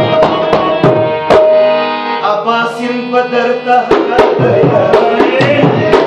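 Harmonium chords with a dholak barrel drum played by hand. The drumming thins to a few strokes under held harmonium notes in the middle, then picks up again, dense and fast.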